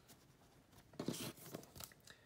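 Faint rustling and crinkling of a foil booster-pack wrapper and trading cards being handled, starting about a second in.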